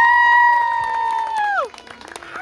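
A crowd of guests whooping: several high, held 'woo' cheers rise, hold for about a second and a half and then drop away together, with a little clapping.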